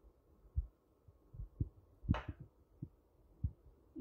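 Irregular, dull low thumps, about a dozen, with one brief scrape or clatter about two seconds in: handling bumps from a phone being moved.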